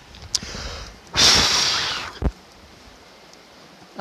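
Leftover grease burning on a freshly welded lawn-mower differential, hissing faintly, then one loud hiss of about a second a little after one second in, with a small click before and after it.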